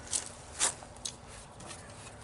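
Two short rasping scrapes about half a second apart as a yellow plastic block on a playground tic-tac-toe panel is turned by hand.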